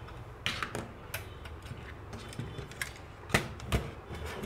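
About seven irregular light clicks and taps of a perforated sheet-metal SMPS power-supply case being handled while its screws are taken out, the two loudest near the end.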